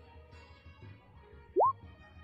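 Quiet background music, with one short rising 'bloop' sound effect near the end.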